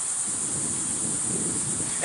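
Steady background hiss, the recording's noise floor, with nothing else standing out.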